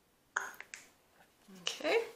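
A sharp plastic click about a third of a second in, followed by a few lighter clicks and taps: a plastic paint squeeze bottle being handled and moved away from the cup as a pour is finished.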